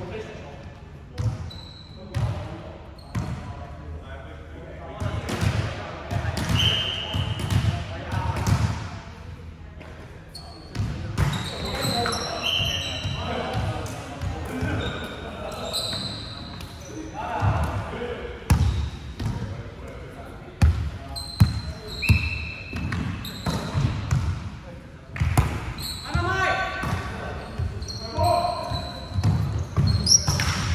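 Indoor volleyball play in an echoing sports hall: players talking and calling to each other, the ball being struck and bouncing off the floor in sharp knocks, and sneakers squeaking briefly on the wooden court.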